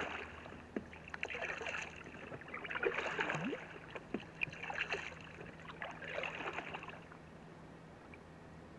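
Paddle strokes in calm lake water from a Gumotex Baraka inflatable canoe: a splash and trickle of water off the blade about every one and a half seconds, stopping near the end.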